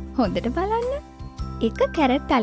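Light children's background music with a tinkling jingle. Over it, from about a quarter-second to one second in, a voice sweeps up and down in pitch.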